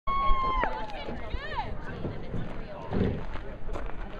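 People's voices calling out. A long high call breaks off sharply about half a second in, a quick warbling call follows, and a louder lower voice comes near the three-second mark, over a steady low rumble.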